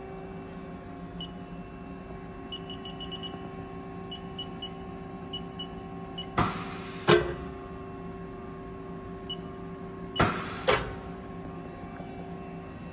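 A steady low electrical hum with faint scattered ticking, broken by four sharp knocks in two pairs, about six and ten seconds in.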